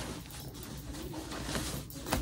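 Rustling and crinkling of a stack of disposable diapers being pressed into a mesh-topped packing cube, with a soft, low wavering tone a little under a second in.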